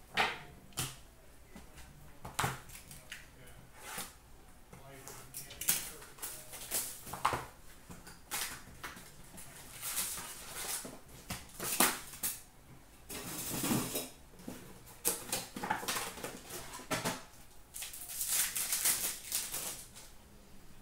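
Hockey card packs being torn open and their cards handled: an irregular run of crinkles, rustles and small clicks from wrappers and card stock, sometimes in quick bunches.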